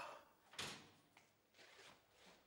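Near silence: room tone, with one faint, short rustle about half a second in.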